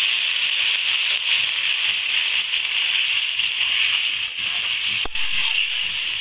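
Curry sizzling steadily in a hot metal wok just after water has been poured onto the cooked masala, a loud even hiss of liquid boiling on hot metal. A single sharp knock about five seconds in.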